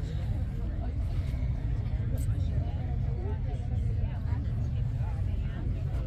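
Indistinct voices of people talking nearby, with no clear words, over a steady low rumble.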